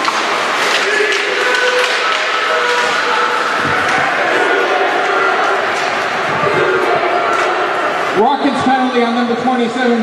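Ice rink game noise: crowd chatter and skating and stick sounds on the ice, at a steady level. About eight seconds in, a man's voice comes over the public-address system, beginning a penalty announcement.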